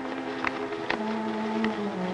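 Background film score with sustained low notes, the held note stepping down to a lower pitch about a second in.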